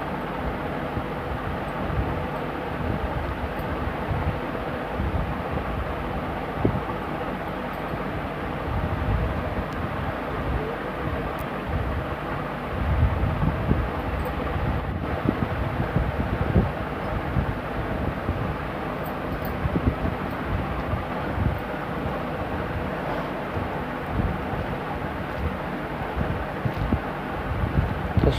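Steady rushing background noise with an uneven low rumble, air buffeting the microphone, and a few faint ticks; no speech.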